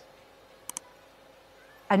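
Two quick sharp clicks in quick succession, a little under a second in, during an otherwise quiet pause.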